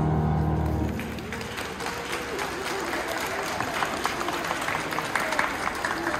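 The last piano chord rings and stops about a second in, then a crowd applauds steadily, with voices mixed in.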